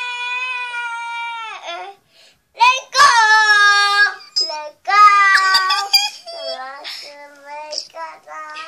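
A young child singing: one long held note, a short pause, then a run of shorter sung notes that drop lower in pitch near the end.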